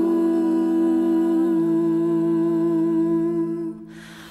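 Slow live music: a hummed voice holds one long steady note over a lower sustained drone note, which steps down about one and a half seconds in. Both fade out just before the end.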